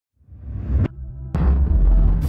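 Dark cinematic intro music: a low rumble swells and cuts off sharply just under a second in, then a hit about half a second later opens into a deep, throbbing bass drone.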